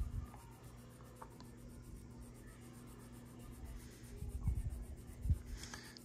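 Faint scratchy rubbing of sandpaper on a small plastic model-kit engine block, sanding a mould seam smooth. A couple of soft low bumps come from handling the part about two-thirds of the way in.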